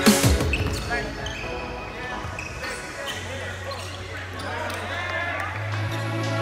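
Gym game sound: a basketball bouncing on a hardwood court, with scattered voices. An electronic drum-and-bass beat cuts out just after the start, and a low held music note comes in about halfway through.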